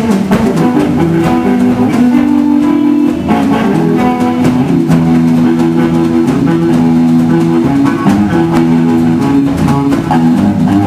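Live blues band playing: acoustic guitar over electric bass guitar and drum kit.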